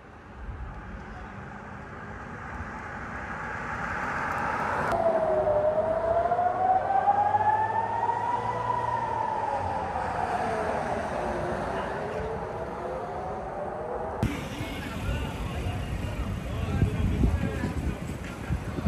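Civil-defence air-raid siren wailing, its pitch gliding slowly up and then back down. It starts abruptly about five seconds in and breaks off about fourteen seconds in, with rumbling street noise and wind on the microphone around it.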